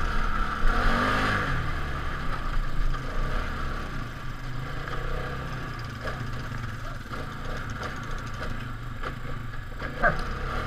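Polaris Sportsman 570's single-cylinder engine running under throttle, its revs rising and falling about a second in, with the quad clattering over rough ground.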